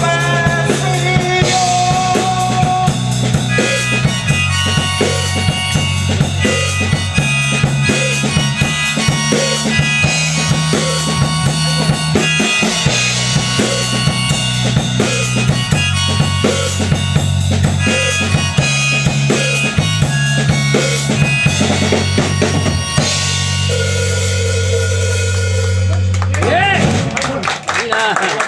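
Live band playing the closing instrumental part of a song: harmonica melody over strummed acoustic guitar, an electric bass line and a drum kit. The song ends on a long held chord a few seconds before the end, and clapping starts.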